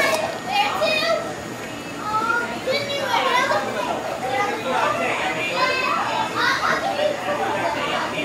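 Several children's voices talking and calling out over one another, high-pitched and continuous, the sound of kids at play.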